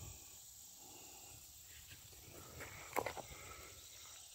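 Faint, steady, high-pitched insect chorus, with a short crunching scuff about three seconds in.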